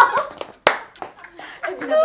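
Young women laughing and exclaiming together, with one sharp hand clap a little over half a second in and a few lighter claps or slaps around it.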